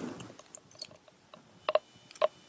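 Gamma radiation counter giving a few sparse clicks, a close pair about a second and a half in, as its probe is held to the bottom of a bottle of uranium oxide (U3O8): a low count rate, which is read as not very radioactive.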